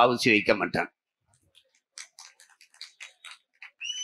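A man's impassioned speech through a microphone, breaking off about a second in. A pause follows with faint, scattered short clicks, and his voice starts again near the end.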